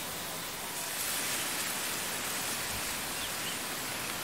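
Steady outdoor field ambience: an even hiss that grows a little louder about a second in, with two faint short chirps past the middle.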